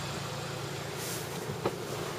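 2011 Hyundai Sonata idling, a steady low hum heard inside the cabin, with a single short click a little past halfway.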